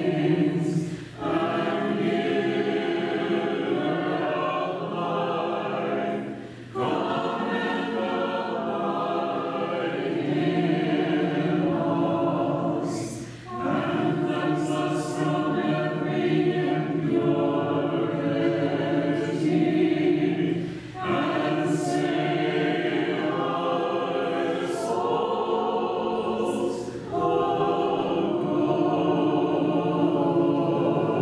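Voices singing Orthodox liturgical chant together a cappella, in long held phrases with a short pause for breath about every six or seven seconds.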